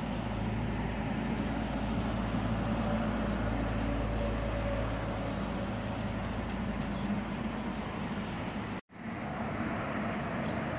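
Classic Mini's four-cylinder engine idling steadily with the car standing still, the sound broken off for an instant near the end.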